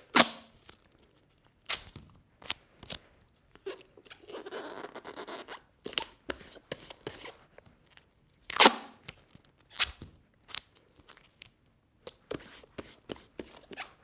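Roll of duct tape being handled: scattered sharp clicks and snaps, loudest near the start and about eight and a half seconds in, with a short rasping stretch of tape pulling off the roll at about four to five seconds in.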